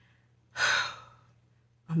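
A woman's single weary sigh, a breathy exhale about half a second in that trails off. It comes from tiredness.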